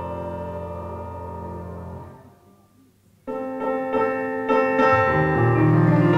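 Piano music: a held piano chord slowly dies away to a brief near-silence, then a new piano passage starts suddenly a little past the middle, with low notes coming in near the end.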